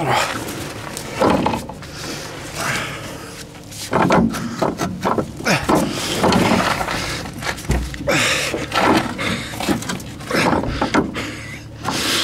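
A man's heavy breathing and grunts of effort, coming in bursts every second or two, as he forces the front strut's lower fork over the control-arm mount. A single low thump about eight seconds in.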